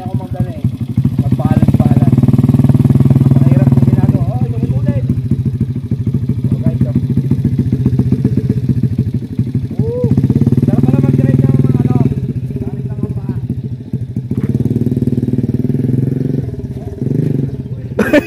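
Small single-cylinder underbone motorcycle engine running under way, opened up and eased off in three uneven surges as the throttle is worked by the rider's feet instead of his hands.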